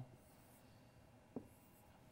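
Near silence: room tone, with one brief faint click about one and a half seconds in.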